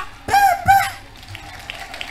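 Two short voiced syllables in the first second, then low crowd noise with scattered claps at about three a second.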